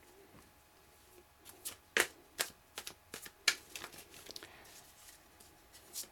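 A tarot deck being shuffled by hand: a string of soft, irregular card snaps and riffling clicks, beginning about a second and a half in.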